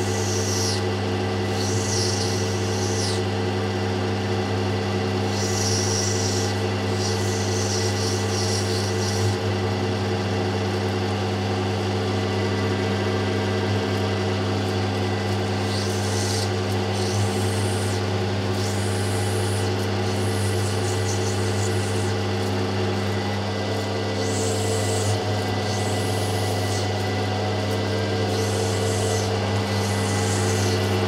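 Lapidary machine motor running with a steady hum while a piece of opal potch is ground against the fine cutting wheel, a higher grinding sound coming in spells of a second or two each time the stone is pressed to the wheel.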